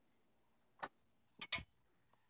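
Three short clicks against near silence, one a little under a second in and two close together about half a second later: the fan's USB cable being handled and pulled from the computer's port.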